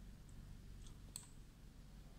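Near silence: low room tone with three faint, short clicks in the first half.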